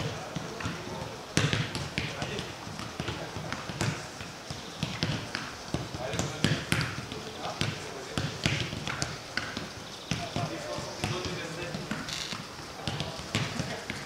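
Footballs being kicked on a grass pitch, sharp thuds at irregular intervals, with players' voices calling in the background.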